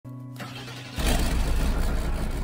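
Opening sting of a TV show's title sequence: a low steady hum, then about a second in a sudden loud, bass-heavy swell that carries on and slowly fades into the theme music.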